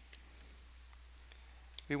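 A few faint computer mouse clicks over a low steady hum, as a slide is clicked to in a presentation program.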